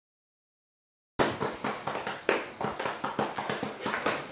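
Dead silence for about the first second, then irregular knocks and taps on hollow wooden boards, about three or four a second, the loudest where the sound cuts in. These are footsteps and skateboard handling on a wooden skate ramp in a small wood-panelled room.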